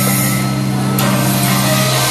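Loud dance music over a nightclub sound system, held on a steady low bass drone with a brief click about a second in.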